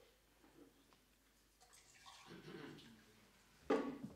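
Water being poured into a drinking glass, faint, in the second half. A brief vocal sound follows near the end.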